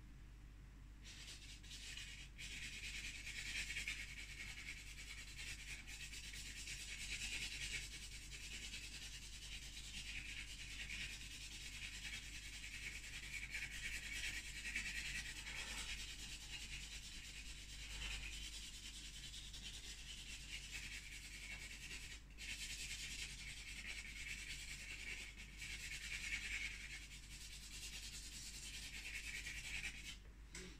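Charcoal stick scratching and rubbing across a stretched canvas in continuous strokes, with a few brief breaks.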